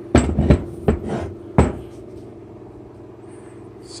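A heavy metal truck steering spindle knocking and clunking against a plywood workbench as it is turned over and set down: several knocks in the first second and a half, then stillness.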